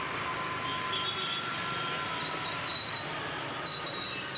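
Steady background noise with faint, thin, high-pitched squealing tones that come and go.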